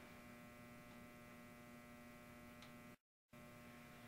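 Near silence: a faint steady electrical hum with many evenly stacked overtones. It drops to dead silence for a moment about three seconds in, at an edit cut.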